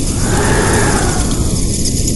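Logo sound effect: a loud, steady rush of noise, heaviest in the low end, with a whoosh that rises and then falls in pitch in the first second.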